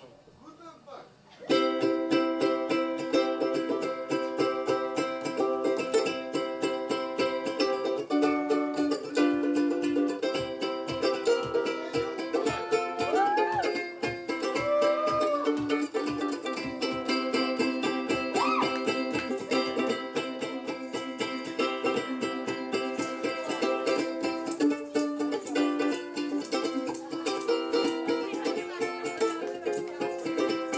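Ukulele strummed in a steady rhythm, starting about a second and a half in after a quiet moment.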